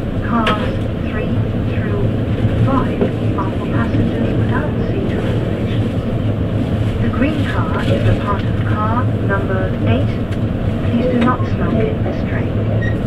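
Running noise of an E257 series limited express train heard from inside the passenger car: a steady low rumble of the train moving along the track. People's voices can be heard over it.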